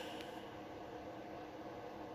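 Quiet room tone: a steady low hiss with a faint electrical hum, and a brief soft rustle at the very start.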